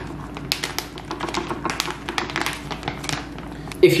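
Plastic microwave rice pouch crinkling and rustling as cooked basmati rice is shaken out of it onto a tortilla wrap. It makes a quick, irregular string of small crackles and clicks.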